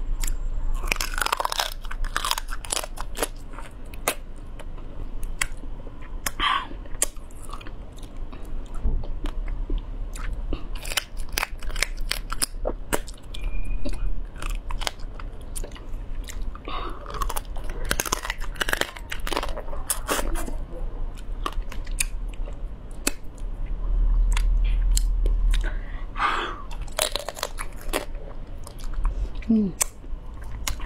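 Close-miked eating of spicy braised shell-on seafood: bites and crunches through shell in clusters, with chewing and wet mouth sounds in between. A low steady hum runs underneath.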